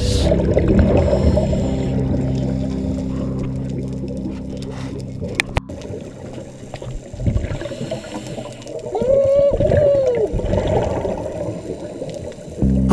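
Background music's sustained low chord fading out over the first half. Then, in a quieter stretch with watery bubbling noise, a single whale-like call rises and falls in pitch for about a second and a half, about nine seconds in.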